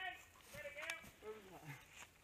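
Faint talking: quiet voices in short phrases, one of them saying "ready".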